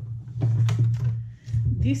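A woman's voice over a steady low hum.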